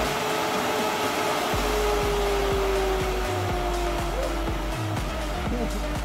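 A steady whirring rush, like a blower or spinning machine, with a faint tone that sinks slowly in pitch, over background music with a deep bass line.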